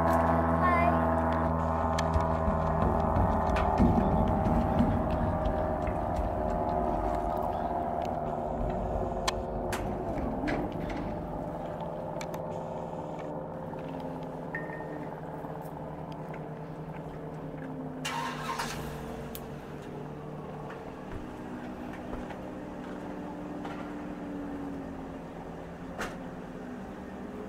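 An engine's steady drone, slowly fading over the whole stretch, its pitch wavering slightly now and then. A short clatter of clicks comes about eighteen seconds in.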